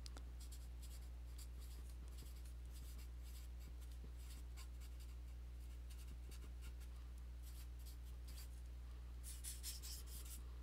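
Felt-tip marker writing on paper: a faint run of short strokes, growing louder near the end. A low steady hum sits underneath.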